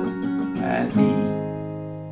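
Acoustic guitar with a capo on the fourth fret, strummed chords followed about a second in by a single down-strum that rings out and slowly fades: the one down-strum on the song's last E minor before the closing A chord.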